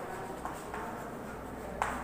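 Chalk writing on a blackboard: a few short taps and scrapes as the chalk strikes the board, the loudest near the end.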